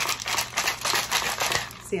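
Clear plastic personal-blender cup handled close to the microphone: a quick, irregular run of clicking and scraping noises that stops just before two seconds in.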